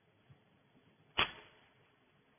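Near silence broken a little over a second in by one short, sharp burst of noise that fades quickly.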